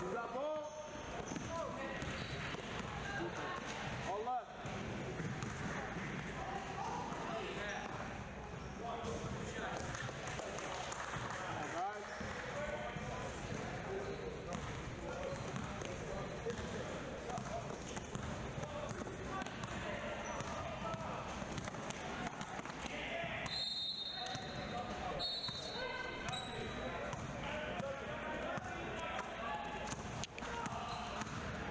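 Basketball dribbling and bouncing on a hardwood gym floor during a game, with players and spectators talking.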